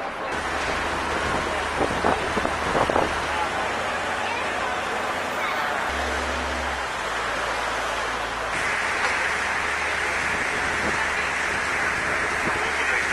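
Steady noisy rush aboard a moving public transport boat on a river, over a low engine drone.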